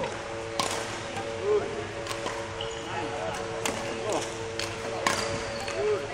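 Badminton rackets striking shuttlecocks, sharp irregular cracks a second or so apart, with court shoes squeaking on the hardwood floor as a player moves, over a steady hum.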